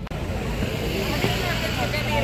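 Busy street ambience: a steady wash of traffic noise with scattered voices of passers-by, and a low engine hum from a vehicle in the second half.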